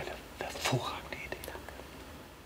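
A faint whispered voice: a few breathy, hissy syllables in the first second.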